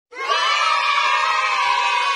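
A group of children cheering together in one long, sustained shout that starts abruptly.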